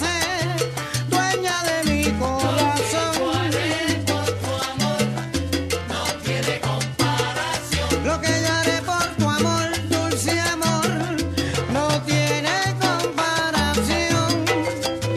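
Salsa music: a repeating, stepping bass line under busy percussion, with melodic parts moving above.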